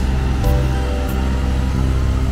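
Background music: held chords that change to a new chord about half a second in.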